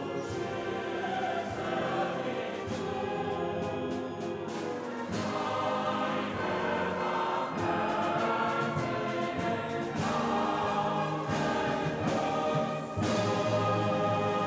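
Church choir singing sustained chords, with a few abrupt jumps in the sound where the footage is cut.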